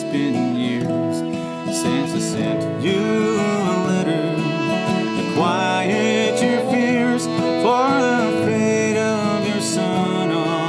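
Live acoustic band playing the instrumental introduction of a song: guitar chords with a melody line that slides and wavers in pitch above them.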